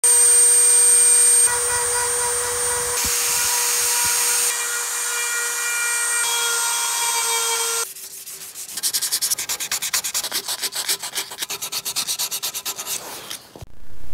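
Dremel rotary tool with a small carving bit running at a steady high whine as it grinds into black walnut, in several short edited stretches. From about eight seconds in, a brush scrubs the carved wood in quick strokes, several a second, cleaning the sanding dust out of the pores before oiling.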